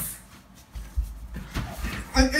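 Quiet scuffling of two people grappling in an embrace, with a few soft low thumps of bodies and feet shifting, about a second in and again near the end.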